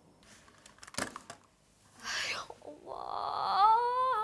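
A person's voice: a short hissing breath about two seconds in, then a long, drawn-out, wavering moan in a high voice that rises and grows louder toward the end.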